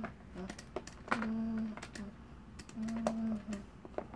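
A voice humming short, level notes on about the same pitch, a few times, with sharp clicks and taps of plastic toy pieces being handled on a plastic play table.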